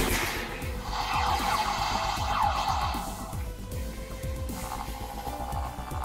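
Electronic sound effects from a The Flash Speed Force Runner toy gauntlet's small built-in speaker, set off by pressing its try-me button, over quiet background music. A noisy sound comes in about a second in and fades around three seconds, and a steadier tone sets in near the end.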